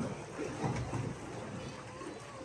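Water rushing into a canal lock chamber through the opened gate doors, a steady rushing noise as the chamber fills.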